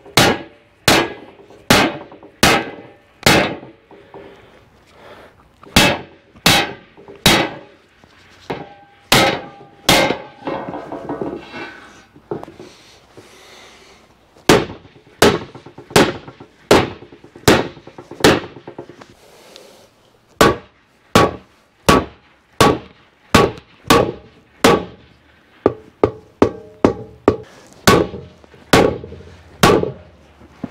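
Hammer blows on a perforated steel plate resting on wooden blocks, about one to two strikes a second, each with a short metallic ring, as the plate is worked to bend it into shape. The strikes pause for a few seconds near the middle.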